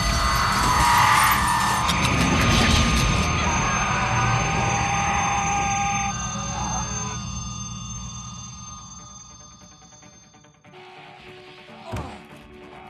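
Dramatic film score mixed with crashing, clattering debris: loud for the first half, then fading away over several seconds to near quiet. A brief sharp hit comes near the end.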